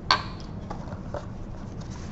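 A single light, sharp click just after the start, then faint small taps and rustles of lab items being handled over a low steady room hum.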